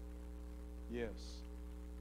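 Steady electrical mains hum: a low, unchanging drone with several overtones. A man says a short "yes" about a second in.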